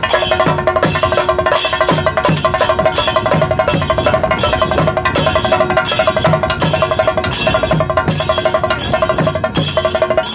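Loud rhythmic percussion music: drum strokes that drop in pitch repeat in a steady beat under quick pulsing notes and a held tone.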